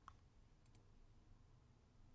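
Near silence with three faint computer mouse clicks in the first second, the last two close together.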